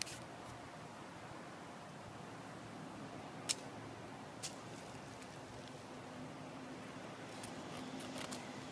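Quiet handling of paracord and a knife at a bamboo stalk: faint background with a few small sharp clicks, the clearest about three and a half and four and a half seconds in, and a faint low steady hum in the second half.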